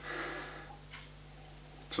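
A person sniffing in through the nose at a glass of whisky, a soft rush of air about half a second long, with a faint short sound about a second in, over a low steady hum.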